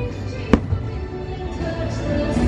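A firework shell bursts with one sharp bang about half a second in, over the fireworks show's music, which is playing in a quieter passage.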